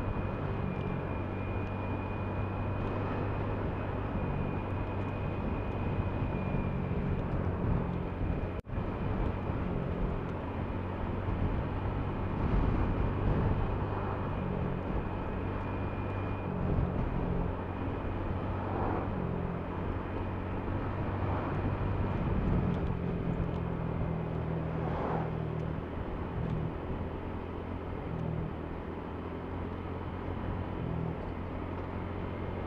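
Motor scooter engine running steadily while riding along a road, with wind and road noise; its low hum shifts in pitch a few times with the throttle.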